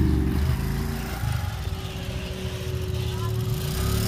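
Low rumble of motorcycle engines, from a motorcycle and a loaded three-wheeled motorcycle loader rickshaw moving slowly. The rumble eases about halfway through and builds again near the end, over a steady hum.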